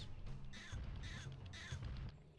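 Cartoon creature sound effect from an anime soundtrack: a run of short, crow-like calls repeating a few times a second over low background music.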